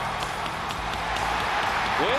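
Ice hockey arena crowd cheering and clapping, a steady wash of noise with scattered claps.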